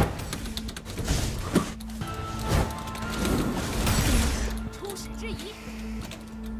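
Background music under video-game battle sound effects: a run of sharp hits in the first couple of seconds, then a long rushing swell about three to four seconds in.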